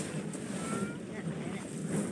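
Hand threshing of rice: bundles of rice stalks rustling and knocking against a wooden threshing box, with a few dull knocks.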